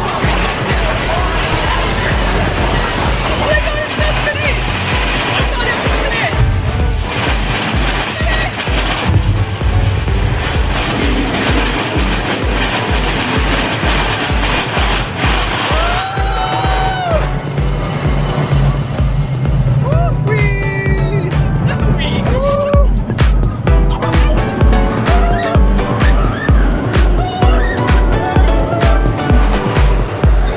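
Background music with a steady beat, about two pulses a second, over the noise of a roller-coaster ride, with a few shouts from the riders.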